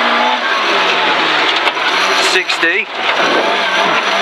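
Rally car engine running hard on a gravel stage, heard from inside the cabin over loud tyre and gravel noise, with a brief dip in level just before three seconds in.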